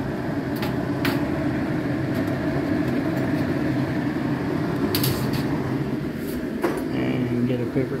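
Hauslane UC-PS18-30 twin-blower under-cabinet range hood running on its highest speed, a steady fan hum. Its draw of only about 157 watts on high is, to the owner, a sign that both motors are not running fully. A few short clicks and rustles from handling, the loudest about five seconds in.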